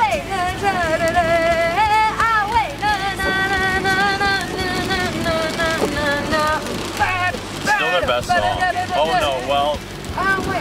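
A woman singing along to a song with no audible backing, holding long notes and sliding between pitches, over the steady low road noise of a car cabin.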